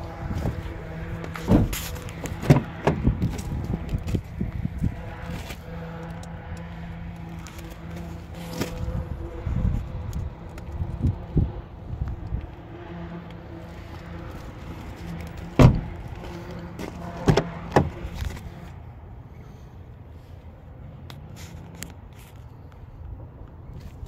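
A 2019 Ford Fusion idling with a steady low hum that fades after about 19 seconds. Over it come scattered sharp knocks and thumps, the loudest about 15 seconds in.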